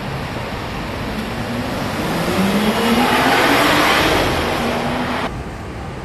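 Night street traffic: a vehicle drives through the intersection, its engine note rising slowly as the noise swells and then fades. The sound cuts off suddenly near the end.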